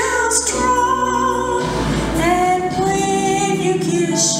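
A woman singing solo into a microphone in long held notes, over a steady instrumental accompaniment.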